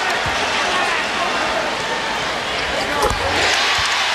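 A basketball bouncing on a hardwood court as a player readies a free throw, over steady arena crowd noise. About three seconds in, the crowd noise swells into cheering as the free throw goes in.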